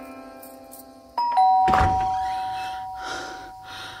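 Two-note electronic doorbell chime, a higher 'ding' and a lower 'dong' a quarter second apart, both ringing on and slowly fading. A short thud comes just after the chime begins, and the last held chord of background music dies away before it.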